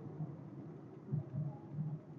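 Faint in-cabin engine and road noise of a 1987 VW Fox's carburetted 1.6 engine with automatic gearbox, driving along gently, a low uneven hum with a slight swell about a second in.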